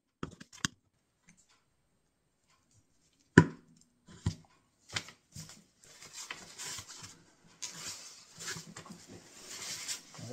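Small clicks of a screwdriver tip pressing a tiny magnet into a hole in a wooden box rim, then a sharp knock on the workbench about three and a half seconds in, the loudest sound, followed by a few lighter knocks and a growing rustling, scraping handling noise as the box is moved about.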